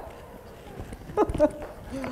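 A fairly quiet second, then a woman's brief laugh with soft knocks from an acoustic guitar being handled and slung on by its strap.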